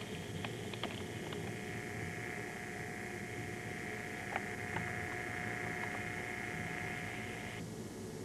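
Steady hiss and hum of a home camcorder recording with a steady high whine that cuts off suddenly near the end, and a few faint clicks.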